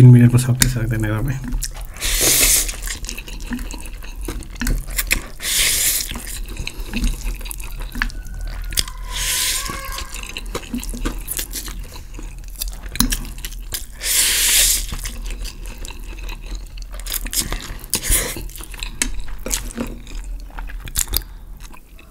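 Spicy instant noodles being slurped and chewed fast, with four long wet slurps spread through the stretch. Small clicks of chopsticks and a fork against the plate run in between.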